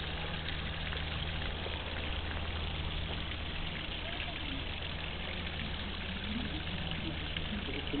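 Steady splashing of a small waterfall running into a pond, over a steady low hum, with faint voices in the background.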